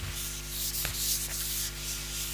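Felt whiteboard eraser rubbing across a whiteboard in a few quick back-and-forth strokes, wiping off marker writing.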